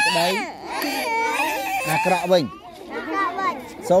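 Excited voices of women and children shouting and squealing over one another, some rising high in pitch.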